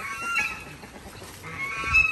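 Farm poultry calling twice, about a second and a half apart.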